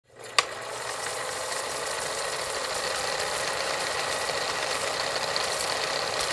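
Film projector sound effect running: a steady mechanical whirring rattle, with a sharp click about half a second in.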